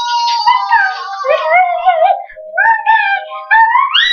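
A toddler singing in a high, wavering voice whose pitch slides up and down, ending in a sharp rising squeal. A few light knocks sound underneath.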